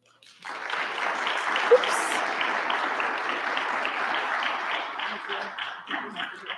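Audience applauding, starting about half a second in and thinning to scattered separate claps near the end.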